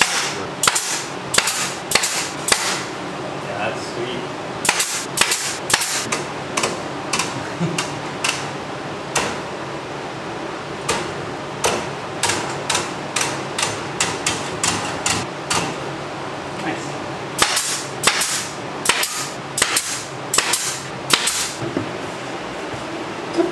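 Staple gun firing staples in quick runs of sharp snaps with short pauses between, fastening wire mesh to a wooden frame.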